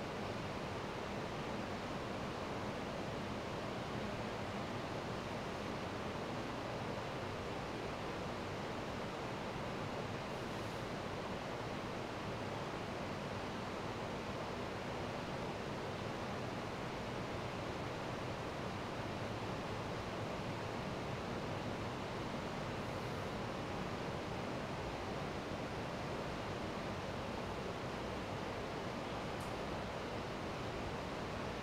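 Steady, even hiss of room tone with a faint low hum underneath.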